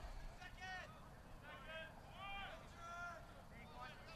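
Faint, distant voices calling out on a sports field: several short shouts spread through the few seconds, over a low background hiss.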